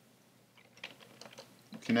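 Computer keyboard keys clicking in a quick, uneven run of typing, starting about half a second in.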